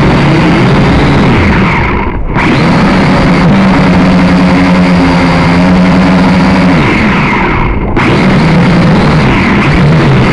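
Small quadcopter drone's electric motors and propellers whining loudly, close up, the pitch shifting up and down as the motor speeds change. The high end briefly drops out and the sound goes dull about two seconds in and again about eight seconds in.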